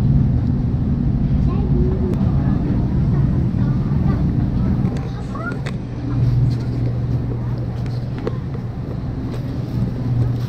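Supermarket ambience: a steady low hum, with faint voices in the background and a few clicks.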